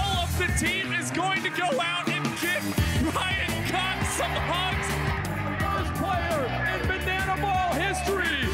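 Upbeat music with vocals; a heavier bass line comes in about three seconds in.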